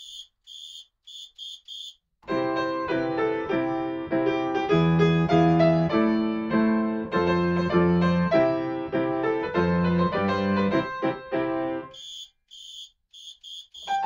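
Yamaha grand piano playing a brisk arrangement of a baseball cheer song, melody over bass chords, coming in about two seconds in and breaking off about two seconds before the end. Before and after the playing, a quick pattern of short, high clicks.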